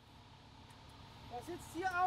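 A brief lull filled by a faint, low machinery rumble, then a man's voice comes in during the last half second.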